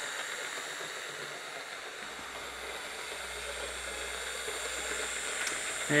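Hornby Railroad Class 06 model diesel shunter running on the track: a steady whirr of its small electric motor and gearing, with the wheels rolling on the rails, heard as an even hiss. A low hum joins about two seconds in.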